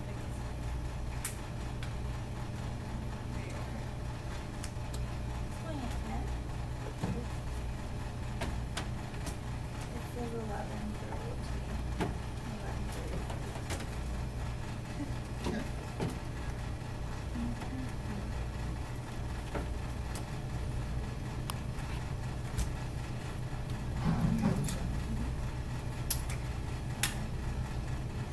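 Scattered knocks and taps of crutches and feet on a wooden practice staircase as a man climbs it, over a steady low hum. Faint voices come and go, a little louder near the end.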